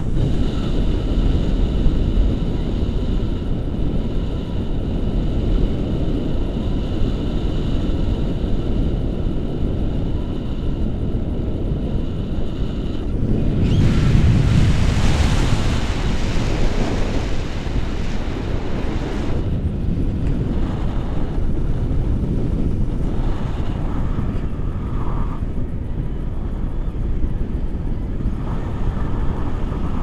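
Wind rushing over the camera microphone in flight under a tandem paraglider, a steady low rumble that swells louder and hissier for a few seconds around the middle. Faint steady high tones sit under it in the first half.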